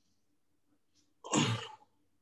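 A person sneezing once, a short loud burst about one and a half seconds in, after a moment of quiet room tone.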